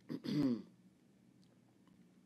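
A man clears his throat once, briefly.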